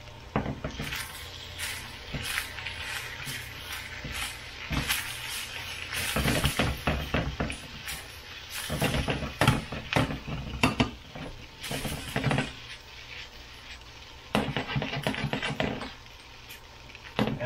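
Frying pan of fried rice being stirred with a spatula: irregular scrapes and knocks against the pan over a low sizzle. Near the end the pan itself is shaken and shifted on the glass cooktop.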